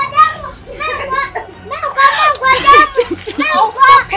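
A child shouting and crying in protest at being pulled away, in a high-pitched voice broken into short bursts.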